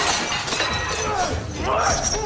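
Dishes and glass smashing as a body crashes across a kitchen counter, sending debris scattering. The crash hits at the very start, followed by voices straining and grunting.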